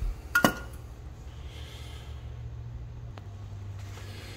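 A single metallic clink with a brief ring about half a second in as small metal muffler parts are set down on the bench, then a faint tick near the end, over a steady low hum.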